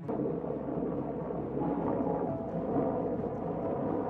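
A helicopter flying overhead, with the steady rough noise of its rotor and engine. The sound starts and stops abruptly with the shot.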